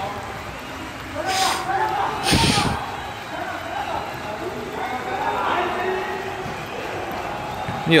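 Players shouting to one another on a futsal pitch in a large metal-framed hall, with a sharp thump about two and a half seconds in, the loudest sound, from the ball being struck.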